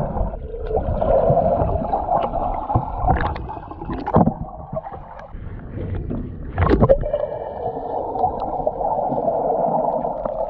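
Swimming-pool water heard through an underwater camera: a steady muffled rush and gurgle of water stirred by a swimmer, broken by a few splashes. The loudest is a sharp splash about seven seconds in, a jumper off the diving board hitting the water.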